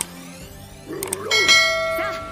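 A bright, bell-like metallic chime struck a little past halfway, its many tones ringing on and slowly fading. It comes just after a brief wavering sound, over the anime's soundtrack.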